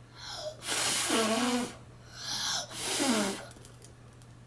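A young child blowing hard at birthday candles, two breathy puffs of about a second each with a bit of voice in them; the candles stay lit.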